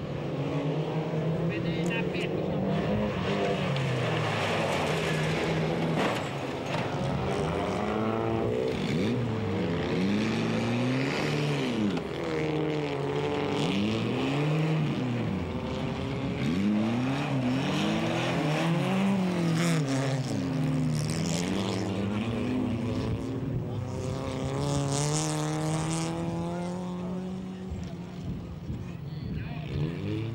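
Engines of several folkrace cars at full throttle on a dirt track, overlapping, their pitch climbing and dropping again and again as the drivers accelerate, lift and shift gear. The sound eases a little near the end.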